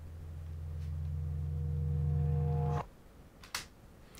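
Reverse-reverbed kalimba sample: a low sustained tone swelling steadily louder for nearly three seconds, then cutting off abruptly.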